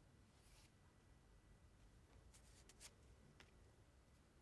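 Near silence: room tone, with a few faint rustles and clicks of paper word cards being handled and swapped, mostly in the second half.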